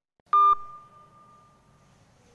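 A short, loud electronic beep about a third of a second in, cut off sharply with a click, its tone lingering faintly and fading over the next second and a half.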